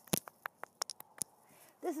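A quick run of sharp clicks and taps of handling noise on a phone's microphone, about eight in just over a second, as the phone is turned around.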